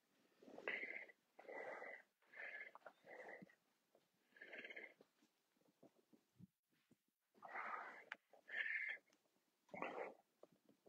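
A man's faint, heavy breathing from exertion during a single-leg deadlift with knee drive: short, breathy puffs in quick runs, with a pause of a couple of seconds in the middle.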